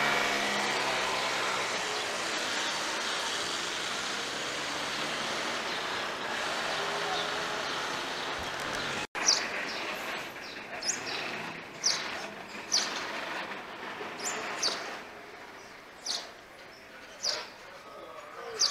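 A moped's small engine passes close and fades into steady street traffic noise. After an abrupt break about nine seconds in, the street is quieter, with repeated short, high bird chirps every second or so.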